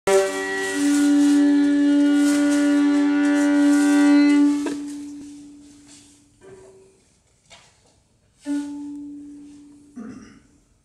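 A long held instrumental note, rich in overtones, that stops about four and a half seconds in and fades away in the room, followed by a short note near six and a half seconds and another held note from about eight and a half seconds.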